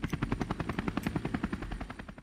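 Helicopter rotor chopping: a fast, even pulse of about eighteen beats a second that dies away near the end.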